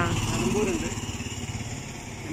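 Small engine of a passing auto-rickshaw, running with a fast low pulse that fades as it goes by.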